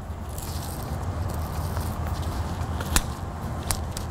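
Steady low outdoor background noise with two short sharp clicks, about three seconds in and again just after, from the helical preformed rods of a splice shunt being snapped into place around a stranded conductor.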